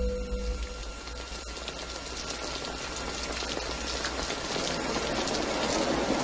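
Film soundtrack over a black screen: a deep rumble and a short steady tone fade out at the start, and an even hiss, like rushing water or rain, then grows steadily louder.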